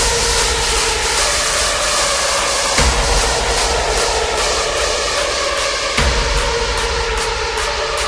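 Hardstyle electronic dance track in a breakdown: a sustained synth chord and noise wash with no steady kick drum, quick regular ticks up high, and a low hit twice, about three seconds apart.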